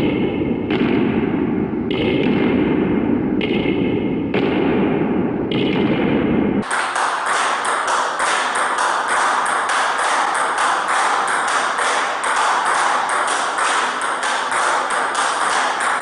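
Table-tennis rally of backhand fast topspin drives, the celluloid ball clicking off the rubber bats and the table in a quick, even rhythm. About six and a half seconds in the sound changes to sharper, brighter clicks, about three a second.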